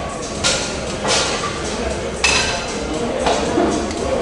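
Gym background: sharp metallic clanks of weights and machines, four of them about a second apart, over a steady room hum and voices.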